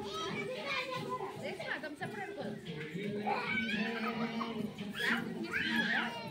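A group of young children chattering, calling out and squealing as they play, many voices overlapping, with the loudest squeals about halfway and near the end. A steady low hum runs underneath.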